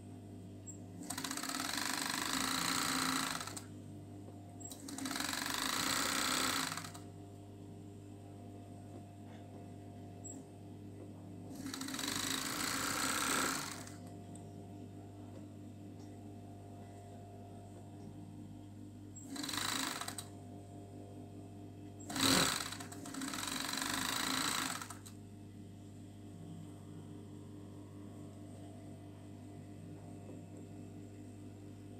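Industrial overlock machine (serger) stitching in six short runs of one to three seconds each, stopping and starting as the fabric is guided. A steady low motor hum carries on between the runs.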